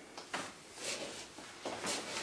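A few short shoe scuffs and steps on a hard floor, with some clothing rustle, as two people move apart and settle into a standing position.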